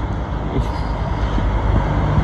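Road traffic: a motor vehicle passing with a steady low engine rumble, a faint hum coming in near the end.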